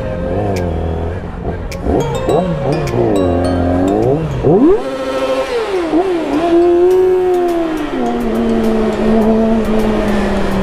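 Inline-four sport motorcycle engines revving in repeated blips, then a sharp rising rev about halfway through as they accelerate, settling into a steadier engine note that sags slowly near the end, inside a road tunnel.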